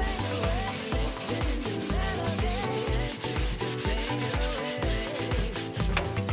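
Background music with a steady drum beat, over the scratchy rubbing of a sponge scrubbing a plastic computer case.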